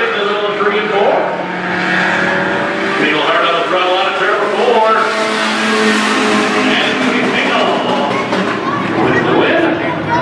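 Two small-engine street cars, a VW and a Chevrolet Cavalier, racing on a dirt oval, their engines revving up and down through the laps. One car passes close about five to six seconds in with a rush of engine and tyre noise. Voices carry on underneath.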